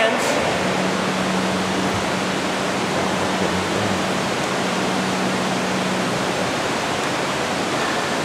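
Steady rushing of water spilling over a four-foot man-made dam inside a cave, with a steady low hum through most of it.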